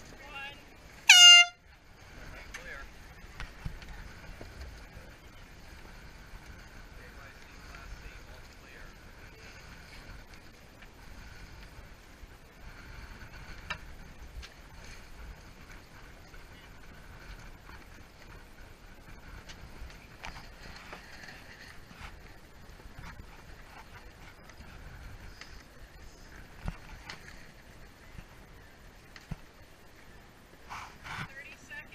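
A race committee air horn gives one short blast of about half a second, the loudest sound here, a start or recall signal for the sailboats on the line. After it come steady wind on the microphone and choppy water.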